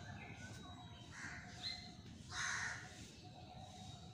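A crow cawing outdoors: two harsh calls, the louder one about two and a half seconds in, with fainter chirps from other birds around them.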